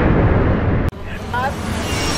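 A loud, deep rumbling noise that cuts off abruptly about a second in. It gives way to wind and motor noise aboard a small open boat, with a brief rising exclamation from a man's voice.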